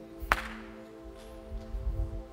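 A soft, sustained chord held on a stage keyboard as a worship pad under the sermon, with one sharp snap about a third of a second in.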